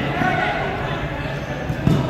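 Indistinct voices of players on the court, with one sharp thud of a futsal ball being struck near the end.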